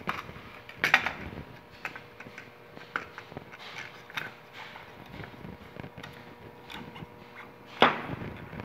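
Small clicks, taps and knocks of a spool of aluminum welding wire being handled and seated into a spool gun's plastic housing, with a sharper knock about a second in and a louder one near the end.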